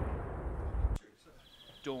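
Low rumble of an explosion from shelling dying away, then cut off suddenly about a second in.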